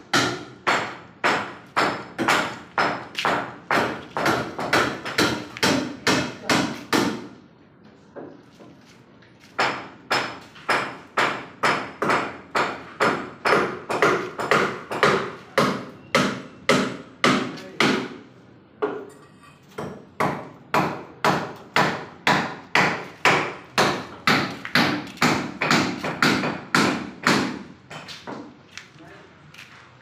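Steady hammering: about two ringing blows a second, in three runs separated by short breaks.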